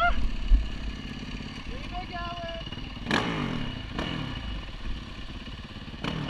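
Dirt bike engine running, heard from a helmet camera with wind on the microphone. A shout comes right at the start and a thump about half a second in. The engine is blipped sharply about three seconds in and again a second later, its pitch falling away each time.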